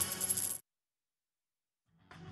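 News-bulletin transition sting ending in high, ringing coin-clink sound effects, cut off abruptly about half a second in and followed by dead silence. Quiet background music begins again right at the end.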